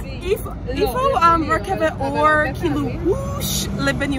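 A woman talking, with road traffic noise running underneath.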